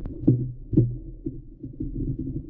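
Muffled underwater sound from a submerged GoPro in its waterproof housing: a low, steady rumble of moving water with dull knocks, loudest about a quarter and three quarters of a second in.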